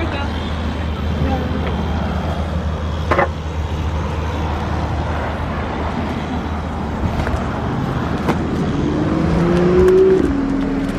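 Steady low rumble of nearby motor-vehicle traffic, with one engine note rising smoothly near the end as a vehicle pulls away.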